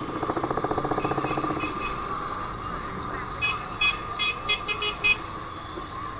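Motorcycle traffic heard from a moving motorcycle. A motorcycle engine runs with a rapid, even pulsing for the first two seconds, then a run of about seven short, high-pitched horn toots comes between about three and a half and five seconds in.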